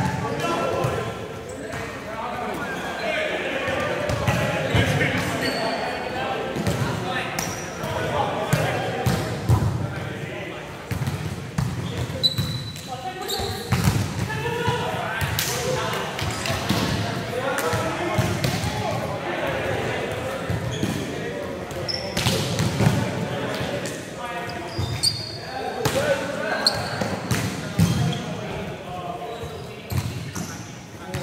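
Volleyballs being struck by hands and arms and bouncing off the court floor, repeated sharp hits throughout, echoing in a large sports hall. Players' voices call and chat throughout.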